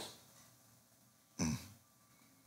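Near silence, then a man's short, low 'mm' of acknowledgement, falling in pitch, about one and a half seconds in.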